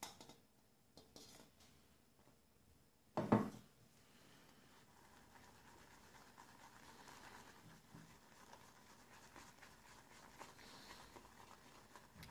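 Badger-hair shaving brush swirling shaving cream in a ceramic bowl, a faint, soft scratchy swishing from about five seconds in as the lather is whipped. A short knock about three seconds in.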